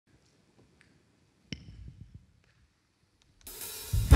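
Quiet stage sound with one sharp tap about a second and a half in, then a cymbal on the drum kit washing in and building over the last half second as the big band's intro begins.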